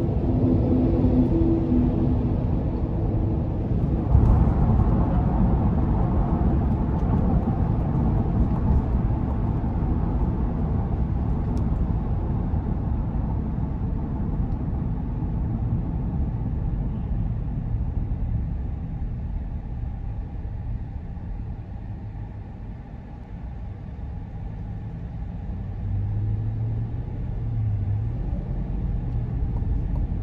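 Cabin noise of a 2022 Chevrolet Tahoe RST on the road: a steady low rumble of tyres and its 5.3-litre V8, with little wind noise. It is quietest about three quarters of the way through, then rises again with a low hum.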